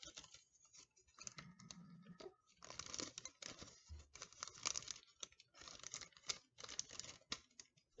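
Faint crinkling and crackling of thin plastic and wax paper in irregular bursts as a set gelatin prosthetic is peeled up off its plastic mold.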